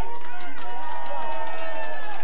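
Several voices at once at a live rocksteady show, holding long notes that slide up and down over one another.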